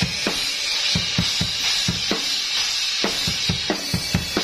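Acoustic drum kit played alone at a sound check: a steady beat of bass drum and snare hits under a continuous cymbal wash, with a few ringing tom hits about two seconds in and again near the end. Only the drums are heard, as the band monitors through in-ear monitors rather than stage amplification.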